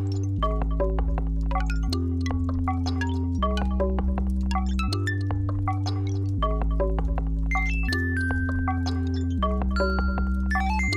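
Electronic music from a modular synthesizer: a low held drone switching between two pitches about every second and a half, under a busy stream of short, bell-like plucked notes.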